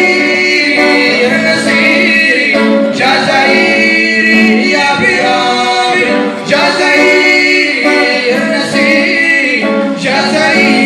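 Male vocals singing a song with acoustic guitar accompaniment, amplified through a PA loudspeaker. The melody is sung in ornamented phrases, with short breaks about three seconds and six and a half seconds in.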